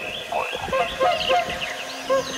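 Many small birds chirping and whistling at once, short, quick calls overlapping in a dense chorus. A low steady tone comes in near the end.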